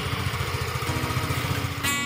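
A motorbike engine running steadily, with guitar music coming in near the end.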